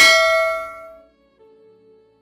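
A single bright bell 'ding' sound effect, of the kind played when a notification bell icon is clicked, ringing out and fading away within about a second. A faint held note follows.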